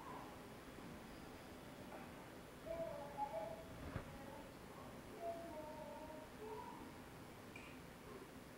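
A toddler's faint short vocalizations, an apprehensive "ah oh" from a videotape played back over loudspeakers in a hall, coming in several brief pitched bits from about three seconds in to nearly seven seconds. A single knock sounds about halfway through.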